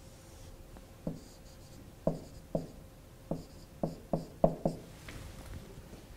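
Marker drawing on a whiteboard: a series of sharp taps as the tip strikes the board, with short high squeaks between them, about eight taps from one to five seconds in, the loudest near four and a half seconds.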